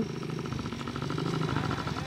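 Small dirt bike's engine running steadily.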